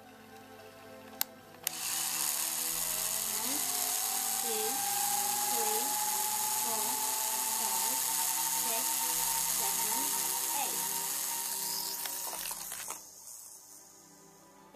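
Micro Chargers toy car launcher charging the cars: two clicks, then a high electric whirr that rises in pitch over a few seconds, holds steady for about ten seconds and cuts off near the end. Background music with singing plays underneath.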